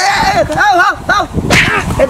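A man crying out "oh, oh, oh" in a wavering, rising-and-falling voice, with two sharp noisy bursts, one at the start and one about one and a half seconds in.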